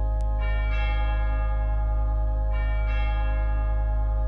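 Bells ringing in recorded closing music, struck in pairs about two seconds apart, each stroke's partials ringing on over a steady low drone.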